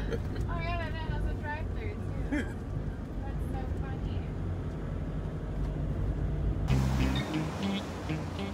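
Steady low engine and road rumble inside a moving taxi's cabin, with a faint, wavering voice in the first couple of seconds. Near the end it cuts abruptly to music.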